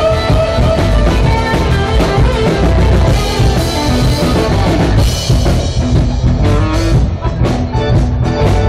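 Live rock band playing: electric guitar over a drum kit, with drum and cymbal hits standing out more sharply near the end.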